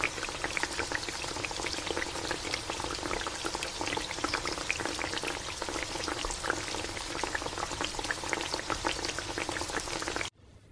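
Chicken and pork simmering in broth in a pot on the stove: a steady bubbling with many small, irregular pops.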